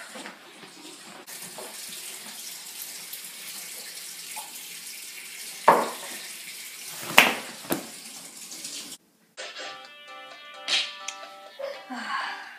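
Water running steadily from a tap for several seconds, with two sharp knocks partway through. After a brief break near the end, background music with sustained notes starts.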